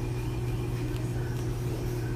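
Steady low electrical hum of a motor or appliance, unchanged throughout, with a faint scratch of yarn being drawn through with a needle about a second in.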